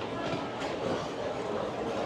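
Steady rumbling background noise of a busy underground shopping concourse, with no clear single event standing out.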